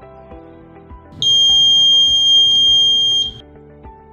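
Piezo buzzer on an Arduino prepaid energy meter giving one steady, high-pitched beep about two seconds long, starting about a second in, as the balance drops to one rupee, the low-balance point. Background music plays throughout.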